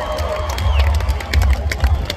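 Live band music through an outdoor concert PA with a heavy low bass, mixed with a crowd cheering and shouting.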